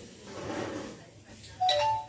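A short two-note chime sounds suddenly near the end, its clear tones the loudest thing heard.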